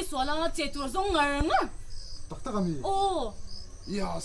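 Speech: a woman's voice talking in two phrases, with faint high insect chirps behind.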